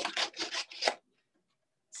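Scissors snipping through a printed paper sheet, about five quick cuts in the first second, then stopping.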